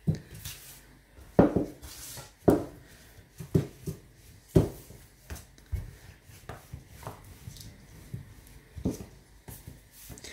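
Wooden rolling pin rolling out a ball of bread dough on a wooden table: soft rubbing strokes with dull knocks about once a second as the pin meets the tabletop.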